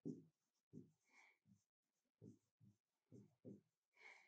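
Faint pen strokes on a writing board: a run of short, irregular scratches as a word is written by hand.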